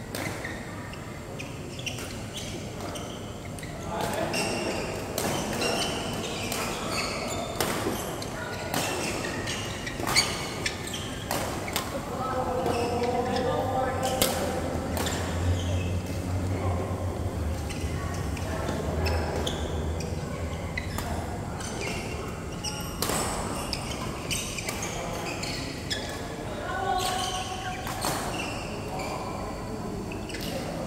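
Badminton rackets striking the shuttlecock in doubles rallies, sharp hits at irregular intervals, with players' voices around them in a large hall.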